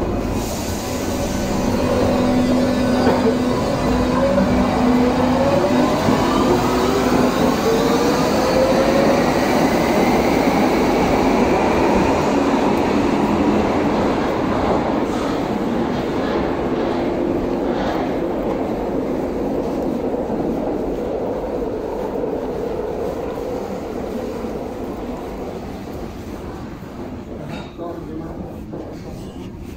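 U-Bahn train pulling out of the station: its motors whine in several tones rising together in pitch as it accelerates. Then the rumble of the running train fades away.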